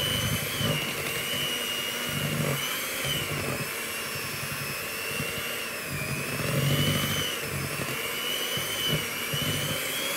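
Kenwood electric hand mixer running steadily with a high, slightly wavering whine, its beaters churning through royal icing in the bowl as it is whipped up to stiff peaks.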